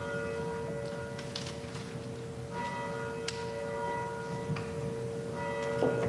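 Soft pipe organ music: a steady held note, with higher notes added about every two and a half seconds, giving a gentle, bell-like sound.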